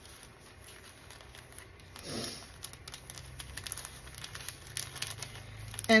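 Clear plastic sleeves of a canvas portfolio crinkling and rustling as they are handled and turned, with scattered light crackles through the second half.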